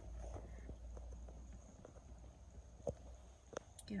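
Quiet low hum inside a car cabin, with a couple of faint clicks in the second half.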